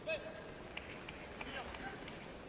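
Arena background of indistinct voices, with one short voiced call just after the start that is the loudest sound, followed by scattered faint voices and small clicks.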